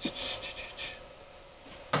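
Four brief rustles in the first second as wax-coated candle wicks are handled by hand, then quiet.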